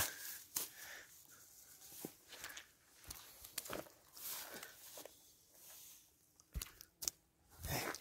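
Grass and dry stalks rustling and crunching as a caught pike is handled on the ground, with scattered clicks and a couple of sharper knocks near the end.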